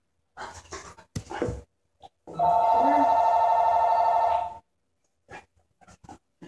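A telephone rings once: a warbling electronic two-tone ring lasting about two seconds, starting a little after two seconds in. Before it come scattered short noises and a sharp click about a second in.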